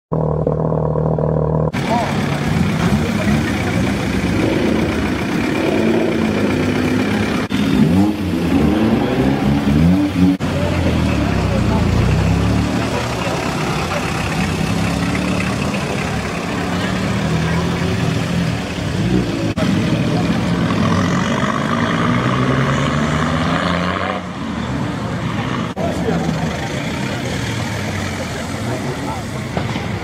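Modified cars' engines revving and pulling away one after another, their pitch rising and falling. The sound cuts off abruptly between short clips several times.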